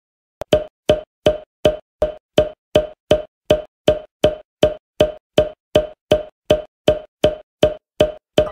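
A cartoon pop sound effect repeated evenly, about three short pops a second, each at the same pitch. Each pop goes with a coloured oval appearing on screen.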